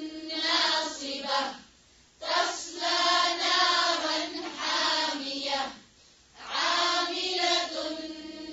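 Quranic recitation chanted in Arabic in a melodic tajweed style: long sung phrases with short breath pauses, about 2 seconds and 6 seconds in.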